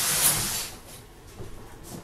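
A short, loud burst of hissing in the first half-second or so, fading out; then quieter room sound with a couple of faint knocks.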